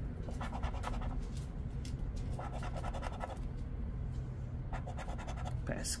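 A coin scraping the scratch-off coating from a paper lottery ticket, in three short spells of quick back-and-forth strokes.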